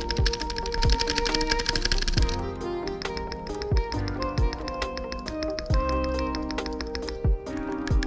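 Spacebar on a CIY GAS67 mechanical keyboard being pressed over and over, testing its screw-in stabilizer: with the stabilizer stock at first, then after tuning. There are rapid clicks in the first two seconds or so, then slower, separate presses. Background music plays under it.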